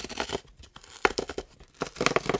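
Tear strip on a cardboard toy box being pulled open by hand: a run of crackly tearing card, getting louder about a second in.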